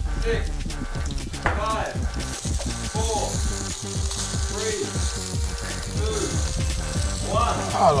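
Background music with a bass line, over frying pans sizzling as plantain and beef fry; the sizzling hiss gets stronger about two seconds in.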